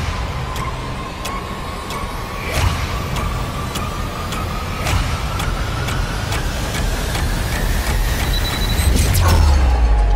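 Trailer sound design: a tone rising slowly and steadily in pitch, over a low rumble, with sharp hits about every half second that come faster toward the end as it builds to a loud peak.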